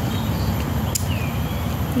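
Wind buffeting a handheld phone microphone, a steady low rumble, with one sharp click about a second in and faint high chirps.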